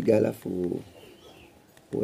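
A man's voice speaking briefly in the first second, then only quiet background.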